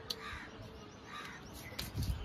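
Two harsh bird calls about a second apart, with a short sharp click just before the first.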